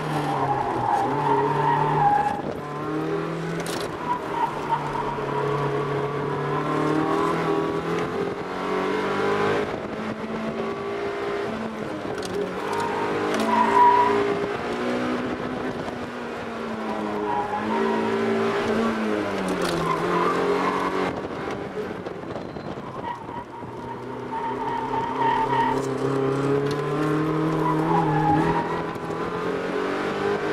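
Toyota Corolla AE86's four-cylinder engine under hard driving, heard from inside the cabin, its revs rising and falling again and again through the corners. The tyres squeal briefly several times, loudest about halfway through.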